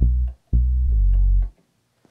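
Deep bass notes from a recorded bass line: a short note, then a longer one held for about a second that stops about a second and a half in. This is the take with the bass slide that was wanted.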